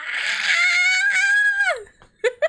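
A woman's long, high-pitched squeal of delight. It is held for most of its length and drops away near the end.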